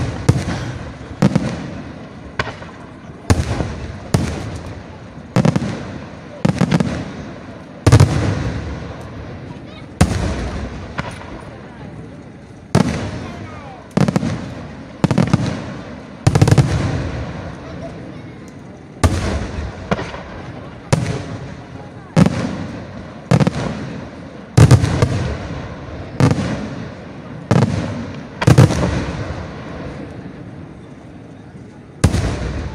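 Aerial firework shells bursting in a steady run, about one sharp bang a second, each followed by a rolling echo that dies away, with a brief pause near the end.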